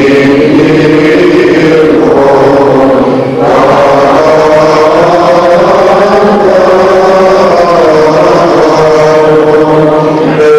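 Orthodox church chant: long, slow held notes that bend gently in pitch, with a short break for breath about three and a half seconds in. Loud.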